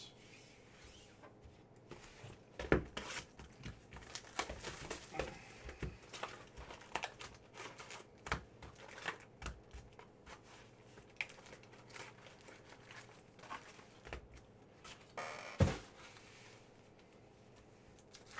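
Foil trading-card pack wrapper crinkling and being torn open, with scattered handling clicks. Two louder thumps, about three seconds in and near the end.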